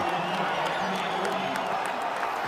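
Stadium crowd cheering and applauding a touchdown, heard as a steady, even wash of noise.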